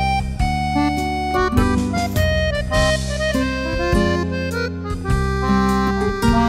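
Yamaha Genos arranger workstation playing a full arrangement: a sustained, reedy melody line over held bass notes and chordal accompaniment.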